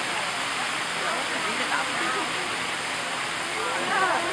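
Indistinct voices of people talking in the background over a steady rushing noise.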